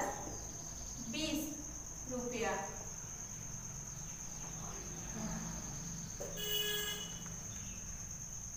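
A steady high-pitched trill runs throughout, with a few short low voice sounds early on and a brief tooting tone near the end.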